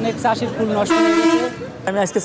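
A vehicle horn sounds once, a single steady toot of about half a second, about a second in.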